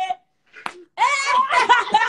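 Laughter over a phone's live-stream audio, breaking out about a second in after a short click.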